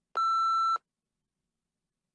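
A single electronic beep, one steady tone lasting about two-thirds of a second: a test timer signal marking the end of the response time.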